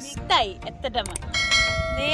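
Notification-bell sound effect from a subscribe-button animation. Swooping pitch sweeps come first, then from about halfway through a bright bell tone rings on steadily.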